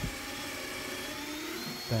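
Power drill running steadily, its twist bit boring out the broken plastic pivot bracket stuck in the top hole of a wooden bifold door, with a faint whine that rises slightly near the end.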